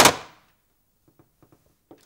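One sudden loud hit with a short fading tail, followed by a few faint clicks.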